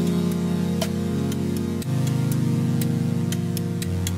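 Outro music: sustained chords with a light ticking beat, the chord changing about two seconds in.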